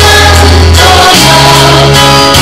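A large group singing together over loud amplified musical backing, with a sustained low bass note that shifts to a new pitch about a second in.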